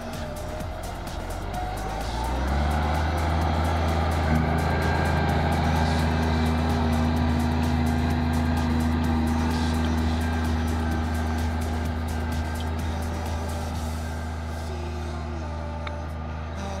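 Deutz-Fahr Agrotron M620 tractor engine running steadily under load as it pulls a Kverneland reversible plough past, growing louder a couple of seconds in and easing off near the end as it moves away.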